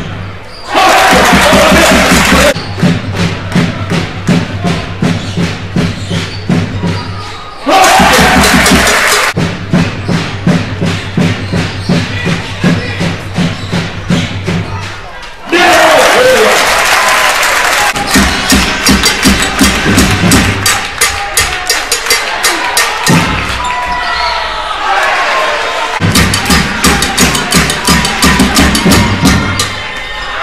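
Backing music with a steady beat and bass line, broken three times by loud bursts of arena crowd cheering: about a second in, about eight seconds in and about sixteen seconds in.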